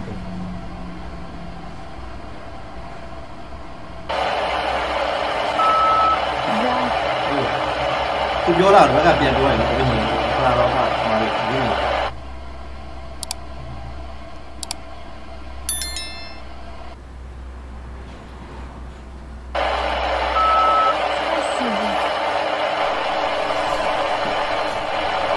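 Radio-style static hiss cutting in and out abruptly in stretches of several seconds, with a short beep shortly after each stretch begins and faint snatches of voice-like sound within the hiss, over a low hum.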